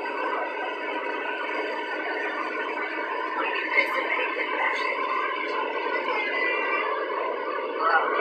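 Steady road and engine noise inside a vehicle cab cruising at highway speed.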